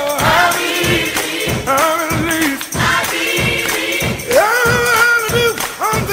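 Gospel song playing: several voices singing over a steady beat of about three strokes a second.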